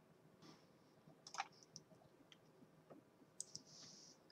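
Near silence broken by a few faint computer mouse clicks, a small cluster about a second and a half in and another near the end.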